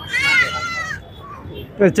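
A goat kid bleats once, a single high call of about a second that rises and falls in pitch. A man's voice starts near the end.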